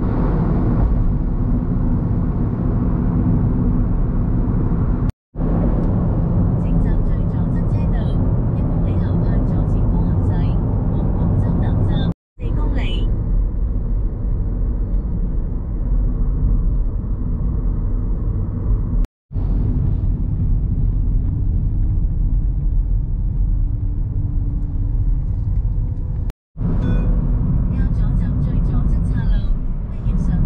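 Road and engine noise inside a moving car's cabin: a steady low rumble that drops out briefly four times.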